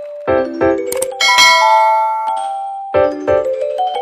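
End-screen outro jingle of bell-like chime notes: a few quick struck notes, a bright ringing chime about a second in that fades away, then another run of quick notes near the end.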